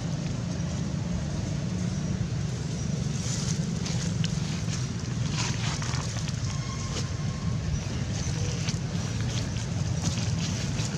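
A steady low rumble, with faint rustling ticks of dry leaves here and there, mostly in the middle and near the end.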